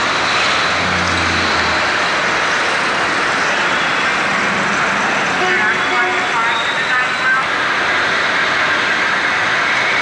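Steady street traffic noise on a busy city street at night. Brief voices come through about halfway in.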